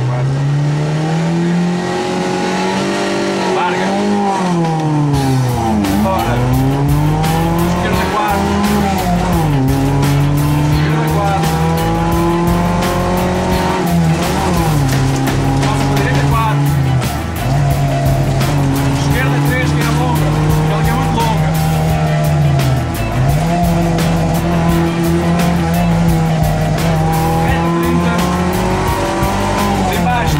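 Renault Clio 1.2's four-cylinder petrol engine heard from inside the cabin, driven hard on a hillclimb: the revs climb steadily and then drop back sharply several times as it goes through the gears and lifts for corners.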